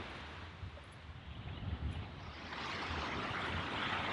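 Small waves breaking and washing up the beach: a soft hiss of surf that swells about two and a half seconds in and carries on.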